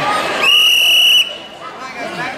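A referee's whistle blown once in a single steady blast of just under a second, over crowd chatter.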